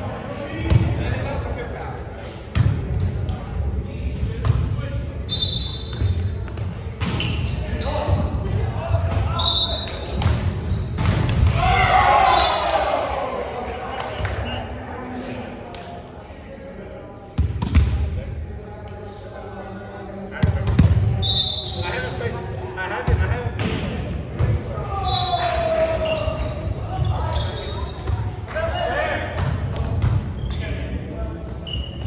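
Indoor volleyball rally sounds in an echoing gym: the ball struck again and again and hitting the floor, with short high squeaks and players shouting calls, two louder falling calls about twelve and twenty-five seconds in.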